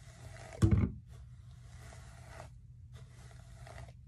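A Tangle Teezer detangling brush drawn down a section of natural 4c hair: three scratchy brushing strokes, each about a second or so long. A short, louder thump comes about two-thirds of a second in.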